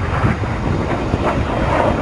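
Jet noise from a Red Arrows BAE Hawk flying overhead, a steady rumble under low wind buffeting on the microphone.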